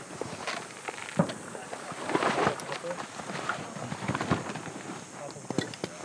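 Footsteps on dry dirt and gravel, with scattered knocks and rustling of gear as a rifle and pack are set down on the ground.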